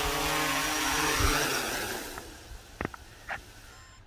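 Small quadcopter drone's electric motors and propellers humming as it touches down, then winding down and fading out about two seconds in as the rotors stop. A couple of faint clicks follow.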